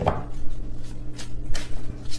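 A tarot deck handled and shuffled by hand, giving a few irregular sharp clicks and slaps of the cards, over a steady low electrical hum.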